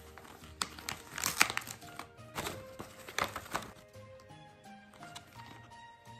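Gift wrapping paper being torn and crumpled, a string of quick rips over the first three or four seconds, with background music throughout.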